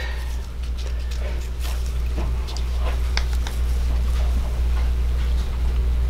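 Small scissors snipping open a leathery ball python egg, heard as a few faint clicks over a steady low hum.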